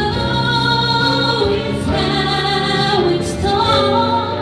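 A woman singing a slow song through a microphone, holding long notes that step from one pitch to the next, with keyboard accompaniment underneath.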